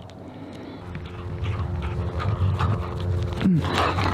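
A dog vocalizing: a long, steady low call that grows louder and drops in pitch near the end, followed by a brief rustle of movement.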